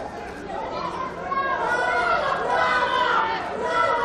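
Several people talking at once: indistinct chatter of overlapping voices, getting louder about a third of the way in.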